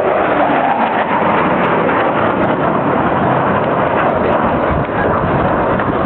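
Twin General Electric F404 turbofan engines of a CF-18 Hornet fighter jet making a loud, steady rush of jet noise as the jet flies past and away.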